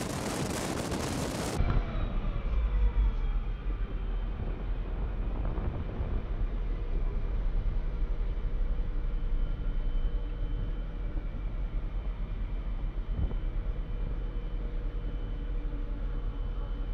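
Wind noise rushing over a side-mounted microphone as the Cadillac Gage V-100 armored car drives at road speed, cut off suddenly about a second and a half in. It gives way to the V-100's engine running with a steady low rumble as the vehicle rolls slowly.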